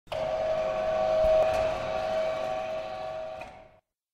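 A steady humming rush with one strong tone held through it. It starts abruptly and cuts off suddenly near the end, a sound effect laid over an animated logo.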